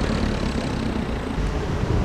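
Steady outdoor noise: wind on the microphone, an uneven low rumble with a hiss over it.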